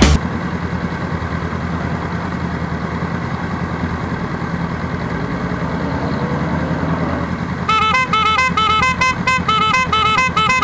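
Motorcycle engines idling with a steady low rumble. About three-quarters of the way in, music cuts in with a fast, repeating run of bright notes.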